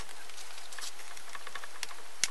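Steady background hiss with no hum, and a faint tap or two near the end as gloved hands handle the microwave oven transformer.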